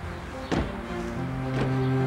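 Two car doors of a black Range Rover slamming shut, a loud one about half a second in and a weaker one a second later, over background music.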